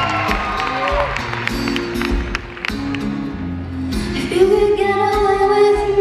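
Acoustic guitar playing the opening chords of a song live, with an audience whoop in the first second. A woman's voice comes in about four seconds in, singing a long held note over the guitar.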